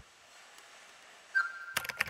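Faint background hiss, then a short high beep a little past halfway, followed by a couple of sharp clicks just before the end.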